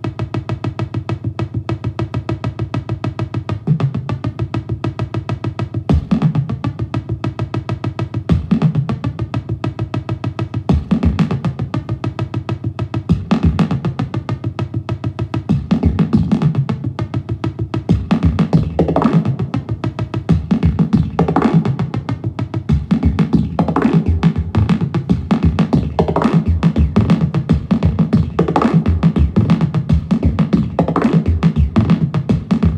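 A Buchla 200-series modular synthesizer patch: a 259 complex oscillator passes through a 292 low-pass gate into a 277r delay with a little feedback. The delay time is swept by the MARF sequencer's control voltage, giving a rapid stream of drum-like pulses with pitched, looping accents about every two and a half seconds. The accents grow busier and less regular in the second half as the MARF sliders are moved.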